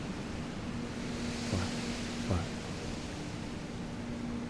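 Steady rushing background noise with a low steady hum from a meditation soundscape bed, under a calm voice softly saying 'flap, flap'.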